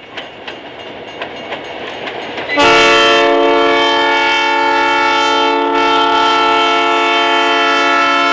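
An approaching freight train rumbles, its wheels clicking over the rail joints. About two and a half seconds in, the diesel locomotive's air horn sounds a loud, steady chord. It breaks briefly about three seconds later and sounds again.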